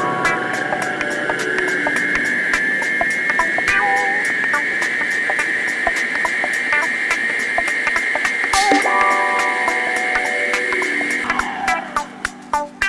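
Electric stand mixer beating eggs and sugar: a steady high motor whine that settles in the first couple of seconds, holds, then falls away near the end as the mixer is switched off.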